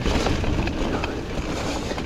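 Mountain bike rolling fast down dry dirt singletrack: steady tyre rumble over the ground with scattered knocks and rattles from the bike.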